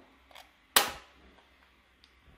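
A single sharp click about a second in as the red button of a Neria-type subcutaneous infusion set's inserter is pressed and fires, driving the cannula under the skin: the click marks the insertion.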